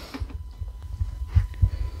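Handling noise: a few light knocks and low rumbles as cordless angle grinders are moved about on a workbench.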